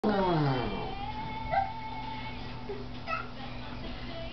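A high, voice-like cry that slides steeply down in pitch, then a long held high note lasting about a second and a half, followed by a couple of short high chirps over a faint steady hum.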